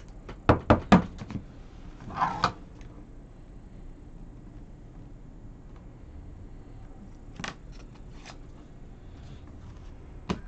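Trading cards and a hard plastic card holder being handled on a table: three sharp clicks in quick succession about half a second in, a short scraping rustle around two seconds in, and a couple of fainter clicks later.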